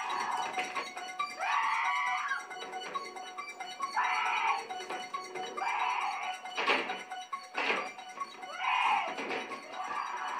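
A woman in a film soundtrack crying out "Help!" and "Please!" again and again, each cry strained and high, over tense background music. Two sharp bangs about a second apart come a little past the middle.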